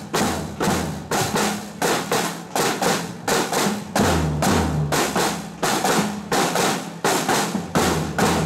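A school marching band's drum line, snare drums with a bass drum, playing a steady march beat of about two strokes a second.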